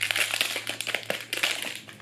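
Wrapping crinkling and crackling as a small hair clip is unwrapped and handled: a dense run of irregular crackles that fades toward the end.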